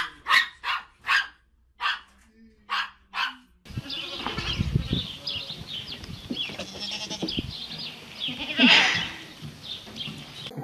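A dog gives about five short barks in the first few seconds. Then goat bleats come in close to the microphone, with the loudest call near the end.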